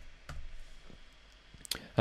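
Soft, scattered keystrokes on a computer keyboard, a handful of separate clicks at an uneven pace, as a password is typed in.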